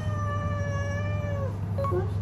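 Brown tabby-and-white cat giving one long, drawn-out meow that glides down in pitch, then holds steady and stops about one and a half seconds in. The cat is begging for food after already being fed.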